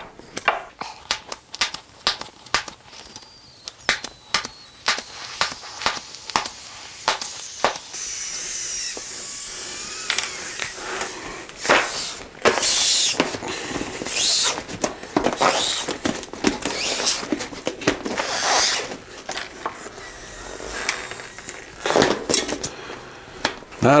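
Bicycle inner tube hissing as air escapes through a hole poked in it, because its valve is clogged with something gooey. The hiss starts a few seconds in after some clicks and knocks of hands on the wheel, and in the second half it comes and goes in bursts.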